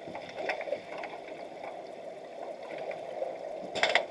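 Underwater sound of an underwater hockey game heard through a submerged camera: a steady muffled rush of water with scattered sharp clicks and knocks, and a louder burst of them near the end.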